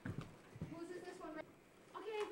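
A few faint knocks, then a faint high voice that holds a bending pitch for about a second.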